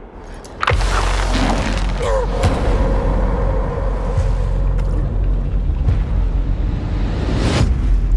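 Dramatic film-trailer score: after a hushed moment, a heavy boom hits just under a second in and opens into a loud, sustained low drone, with further hits around two and a half seconds and just before the end.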